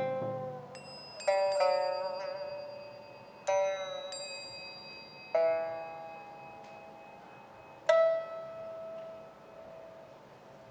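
Slow, sparse pipa-and-percussion music: a low drum stroke, then single notes struck one at a time on small bronze bowls and the pipa, each left to ring and die away slowly, about seven in all.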